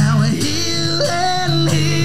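A man singing with his own acoustic guitar. His voice slides between notes and holds long tones over the steady guitar.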